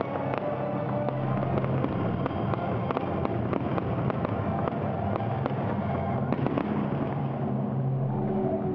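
Fireworks going off in quick succession, a dense run of small sharp pops and crackles, with music playing steadily underneath.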